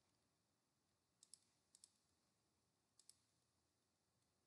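Near silence broken by three faint computer mouse clicks, each a quick press-and-release pair, at about one and a quarter, one and three quarters, and three seconds in.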